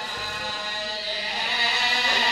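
A voice holding one long, steady chanted note through a public-address system, as in a mourning lament, swelling a little near the end.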